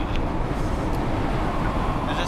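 Steady engine and road noise heard from inside a van's passenger cabin, a low, even rumble.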